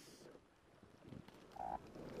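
Near silence: faint outdoor background hiss, with one brief mid-pitched sound about one and a half seconds in.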